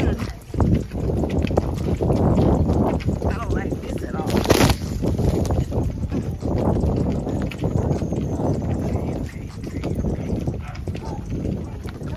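Horses walking in a line on a dirt trail, their hooves clopping, with a brief noisy burst about four and a half seconds in.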